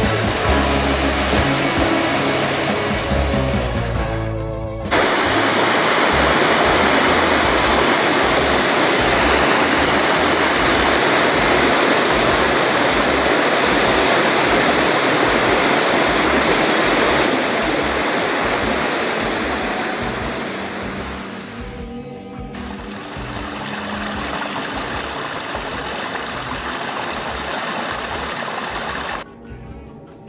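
Waterfall: a loud, steady rush of falling water that cuts in suddenly about five seconds in, after music. It breaks off briefly a little after twenty seconds and returns a bit quieter, then stops sharply just before the end as music comes back.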